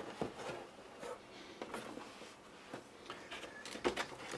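Faint rustling and a few soft clicks and knocks of hands handling a cardboard box and its molded pulp packaging tray, with a sharper click just before the end.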